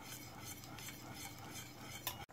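Faint stirring of vermicelli in thickening milk in a pot.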